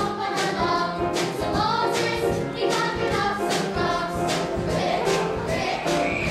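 A choir of voices singing with musical accompaniment over a steady beat, about two strokes a second.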